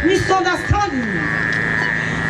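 A voice praying aloud in a continuous stream, with a steady high-pitched tone underneath.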